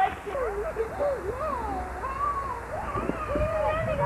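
Voices talking at a distance, some high-pitched like children's, over a steady low rumble.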